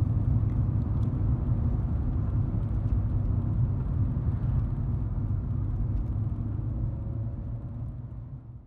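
Engine and road noise heard inside the cabin of a 2008 Seat Ibiza 1.4 16v petrol four-cylinder driving steadily at road speed, a low rumble that fades out near the end.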